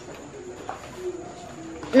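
Faint, repeated low cooing of a dove: a row of short, even coos.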